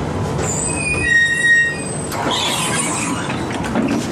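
Tram interior as it pulls into a stop: a high, several-toned squeal of the wheels or brakes lasting about a second and a half, then a brief rush of noise, over the tram's steady rumble.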